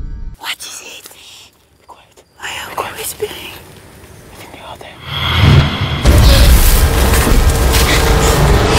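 Film trailer soundtrack: a hushed, sparse stretch with a few scattered small sounds, then about five seconds in the music comes back in loud and dense with a deep boom.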